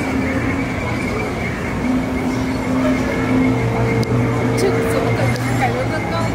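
Dark-ride bayou ambience: a steady low hum with a steady high tone over it, and indistinct chatter of voices, with no clear words.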